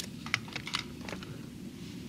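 A quick run of sharp plastic-and-metal clicks from laparoscopic forceps as they release the paper and are drawn out of the box trainer's ports, over a steady low room hum.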